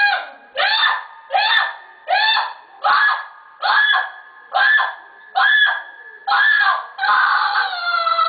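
A person crying out over and over in a high-pitched voice: about ten short, evenly spaced wails, one roughly every 0.8 seconds, each rising in pitch and then holding. These are the cries of a ruqya patient under treatment.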